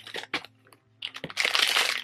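Clear plastic packet of fudge crinkling as it is handled and pulled out of a shopping bag: a few small clicks at first, then about a second of dense crinkling from about a second in.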